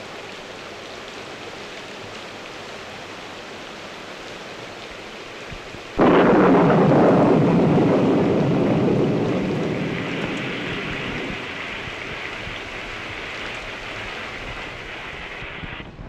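Steady rain, then about six seconds in a sudden loud thunderclap whose rumble fades slowly over the next several seconds.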